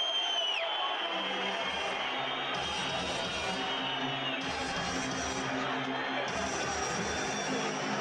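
Music over the arena sound system with crowd noise under it in an ice hockey arena. A high whistle note in the first second slides down and stops.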